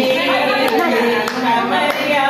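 A group of women singing a folk song together in unison, with a steady rhythm of hand claps, about two to three a second.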